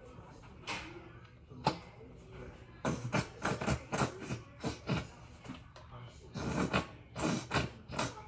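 Water poured from a plastic cup over a person's hair while it is rinsed at a kitchen sink, splashing into the basin in a run of short bursts from about three seconds in.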